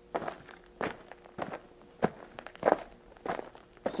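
Footsteps of a person walking at a steady pace, about three steps every two seconds.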